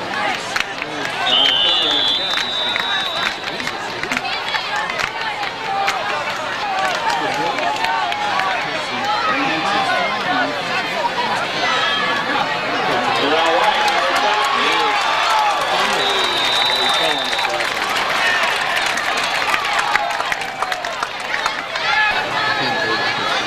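Crowd of spectators in the stands talking and calling out over one another. A referee's whistle sounds twice, high and brief, about a second in and again about sixteen seconds in.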